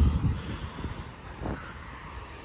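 Low, uneven outdoor rumble: wind on the microphone with distant road traffic.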